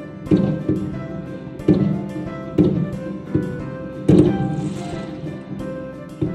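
Background music with sustained tones, punctuated by a heavy percussive hit every second or so. The loudest hit comes about four seconds in.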